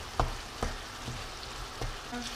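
Minced beef sizzling steadily as it fries in a pan, stirred with a wooden spatula that knocks against the pan a few times.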